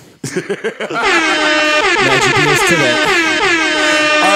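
A loud air horn sound-effect drop with music, starting about a second in and running on as one long blast.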